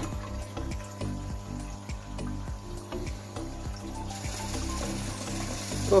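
Kitchen tap running, its stream splashing into a pot of water in a stainless steel sink as the still's cooling water is topped up with cold water. The splashing grows brighter about four seconds in.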